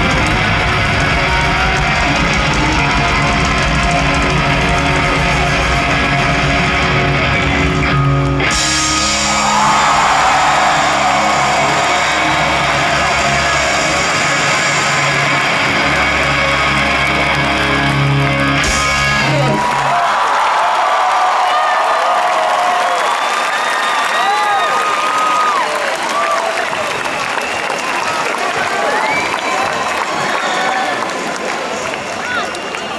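Loud live punk rock band with distorted electric guitars, bass and drums. About eight seconds in the cymbals drop out, leaving held guitar chords and bass notes. Around twenty seconds in the music stops and a large crowd cheers and screams.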